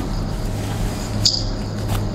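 A pause in speech over a steady low hum, with one brief high squeak about a second and a quarter in.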